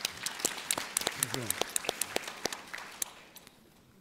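Audience applause, a crowd clapping that thins out and dies away about three seconds in.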